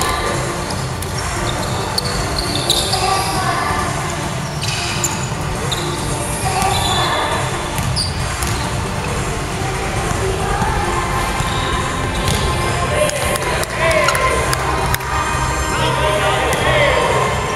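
A basketball bouncing on a wooden gym floor, with players' voices echoing around the large hall, louder near the end.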